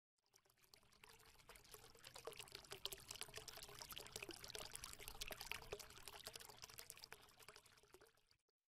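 Faint sound of water pouring and trickling, a dense patter of small splashes and bubbles that fades in and dies away near the end.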